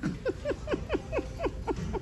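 A person laughing in a quick run of about seven short, high-pitched 'ha's, each falling in pitch.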